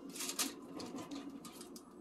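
Soft rustling and a few light clicks and taps from food and utensils being handled on a parchment-lined baking sheet. The clearest click comes a little under half a second in.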